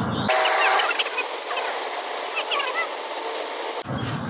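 Spinning fishing reel working under load while a hooked fish is fought, giving a steady mechanical whirr with short bird chirps over it.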